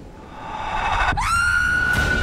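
Trailer sound design: a low swell building up, then about a second in a tone sweeps sharply upward and holds as a high, steady, siren-like whine.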